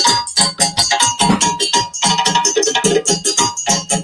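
West African drum ensemble playing a fast, dense rhythm: djembes struck by hand with a stick-beaten barrel drum on a stand.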